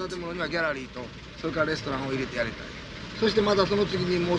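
Speech: a voice talking continuously, with no other clear sound standing out.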